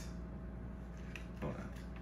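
Quiet room tone with a steady low hum, broken by a man briefly saying 'what?' about a second and a half in.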